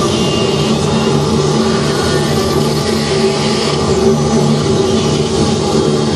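Loud, dense electronic noise drone from tape playback fed through a mixer: a steady hissy wash over low droning hums, the lowest hum cutting in and out every second or so.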